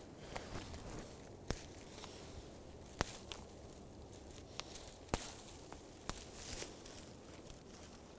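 Fine dead conifer twigs snapped off by hand, several sharp snaps spread through a faint rustle of needles and branches being handled.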